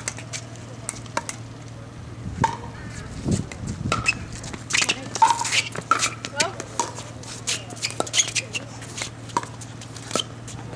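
Pickleball rally: paddles striking the plastic ball in a run of sharp pops at irregular spacing, busier from about two seconds in, with short voices from the players between shots. A steady low hum sits underneath.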